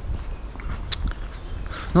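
Footsteps of a person walking on a dirt forest path, a few faint scuffs and clicks over a low steady rumble on the microphone.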